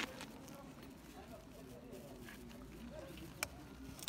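A single sharp click about three and a half seconds in: the engine kill switch on a Yamaha XT660 being flipped back to run, the reason the bike would not start. Otherwise quiet.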